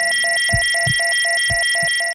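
Electronic 'signal lost' tone: a steady high beep with a lower tone pulsing about four times a second, over a few dull low thumps.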